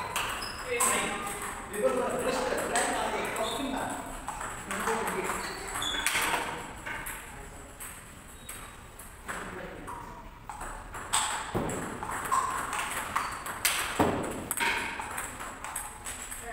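Table tennis balls clicking off paddles and tables, in scattered sharp strokes with a brief high ring.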